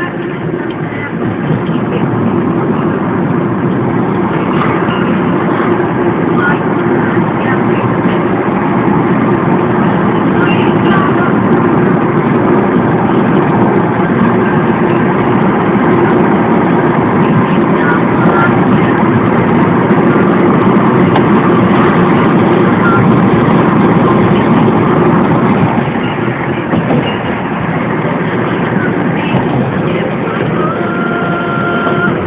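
A car being driven: steady, loud engine and road noise with a constant low hum. It eases slightly near the end.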